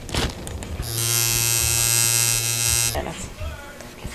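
Tattoo machine buzzing steadily for about two seconds, starting about a second in and cutting off sharply about three seconds in.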